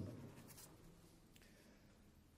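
Near silence: the room tone of a hall, with two faint light noises about half a second and a second and a half in.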